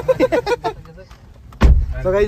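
Inside a moving car: a man talks briefly, then a sudden loud low thump comes near the end.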